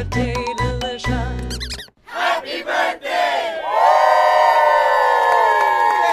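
The last bars of a sung birthday song, with a wavering solo voice over a bass-heavy backing, stopping about two seconds in. After a short break a group of voices cheers, then holds long shouts together.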